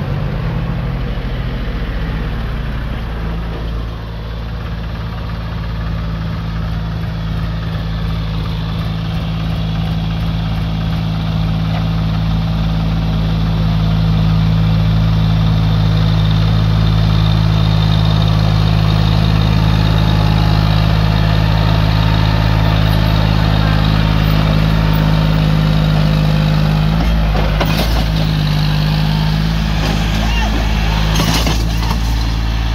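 Farm tractor's diesel engine running steadily under load as it hauls a loaded trailer of soil up a dirt track. It grows louder as it comes closer. A couple of knocks sound near the end.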